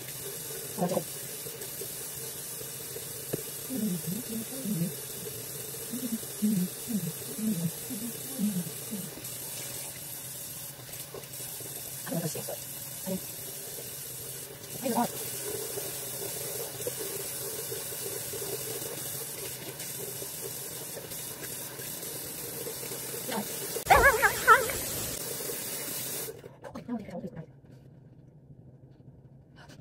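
Bathroom sink tap running steadily while a face is washed at the basin. A short loud knock comes a few seconds before the end, and the running water then cuts off. Earlier there are a few short vocal sounds.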